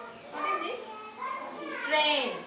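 Young children's voices chattering and calling out in a classroom, with a louder voice near the end.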